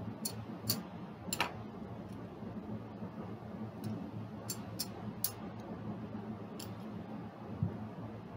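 Casino chips and dice clicking as they are picked up and set down on a felt craps layout: about eight sharp, irregular clicks, over a steady low hum.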